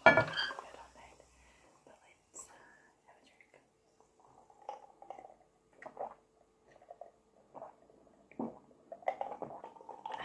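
Glass clinking sharply at the very start, then soft, scattered sips and swallows from a glass jar mug of a drink.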